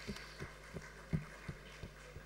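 Quiet room tone with a run of faint, short low thumps, about three a second.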